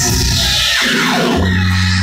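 A live rock band playing loud, with bass and guitar, picked up by a phone's microphone in the crowd. A falling sweep in pitch runs through the first second.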